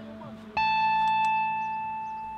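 Background piano music: a single note is struck about half a second in and left to ring, slowly fading.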